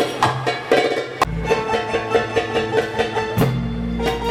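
Live Arabic band music with electronic keyboards and percussion. About a second in it breaks off sharply into a different tune with a steady low drone and a quick, even percussion beat.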